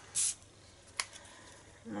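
Paper and card being handled on a craft mat: a brief rustle just after the start, then a single light click about a second in.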